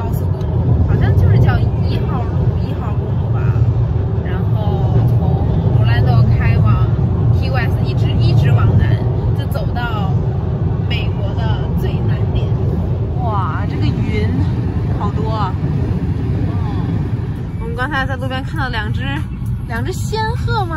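Steady low road and engine noise inside a moving car's cabin, under women's voices talking throughout.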